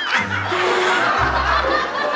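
Laughter over background music with a steady bass line.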